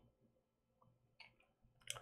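Near silence: room tone with a few faint, brief clicks, the last one near the end slightly louder.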